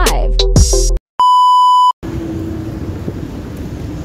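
Intro music that cuts off about a second in, followed by a single steady electronic beep lasting just under a second, then a low, steady street traffic noise.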